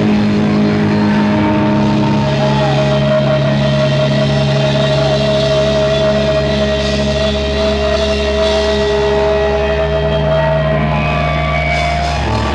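Live band's electric guitars sustaining a distorted droning chord through the amplifiers, with a steady high ringing feedback tone held over it, and no drumbeat.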